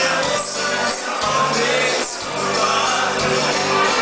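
A live dance band playing amplified music with a singer, sustained bass notes under it.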